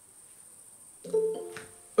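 A brief musical sound: a few steady notes sounding together, starting about halfway through and fading out within a second, after a moment of near-silent room tone.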